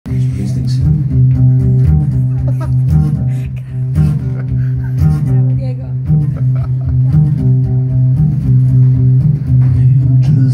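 Acoustic guitar strummed live in a steady, repeating rhythm, a droning low riff on the bass strings.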